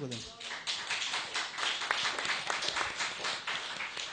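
Congregation applauding: many hands clapping in a dense, uneven patter, beginning just after the preacher's last words.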